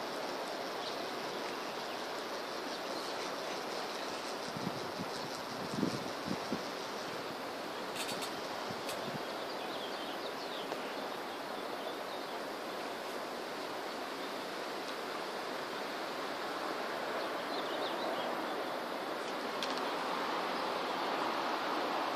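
Steady outdoor background hiss, with a few light knocks about a quarter of the way in and two sharp clicks soon after, from small plastic toy parts being handled on a table.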